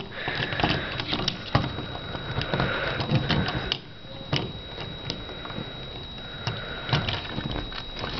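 Hands handling a plastic transforming action figure, setting it on a tabletop over and over while trying to make it stand: scattered light plastic clicks and knocks with a soft handling rustle. A faint steady high tone runs underneath.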